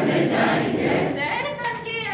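Several voices singing a Hindi action rhyme together in unison.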